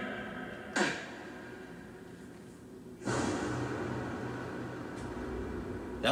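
Film-trailer sound effects heard through playback speakers: a sharp hit about a second in that rings away, then from about three seconds a steady noisy rush over a low rumble.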